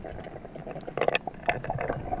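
Muffled underwater ambience picked up by a camera, with a low rumble and scattered sharp clicks and crackles, a cluster of them about a second in.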